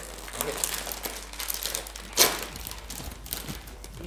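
Plastic snack bag crinkling as it is handled and pulled at to open it, a bag that proves hard to open, with one sharper, louder crackle about two seconds in.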